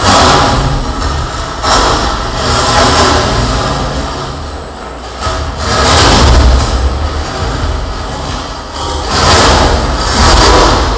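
Harsh noise: dense, distorted amplified noise from contact-miked chains and sheet metal, swelling into loud surges several times, near the start, around two and six seconds in, and near the end.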